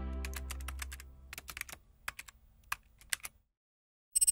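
Sound-effect sting: a deep low tone fading away under a run of irregular keyboard-typing clicks, about fifteen of them. The clicks stop about three and a half seconds in.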